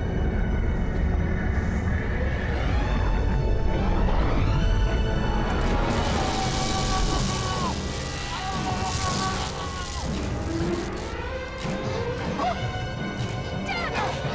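Tense dramatic film score over booming, crashing sound effects and a low rumble. In the middle a hissing crackle of electricity breaks out as arcs strike the SUV.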